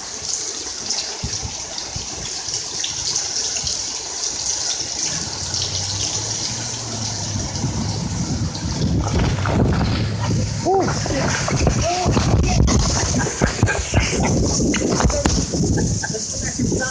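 Heavy rain pouring down in a violent rainstorm, a steady loud hiss. From about five seconds in, a low rumble of wind gusts builds and grows louder.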